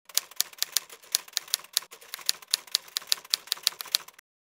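Typewriter keystrokes, a quick uneven run of sharp clacks at about six a second, typing out on-screen text.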